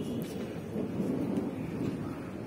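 Thunder rumbling low and continuously, a little louder in the second half.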